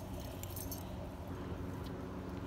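Faint metallic jingling of small dogs' collar tags as two small dogs tussle and play, over a low, steady outdoor background hum.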